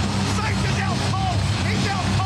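Arena crowd shouting and cheering over music with a steady low bass.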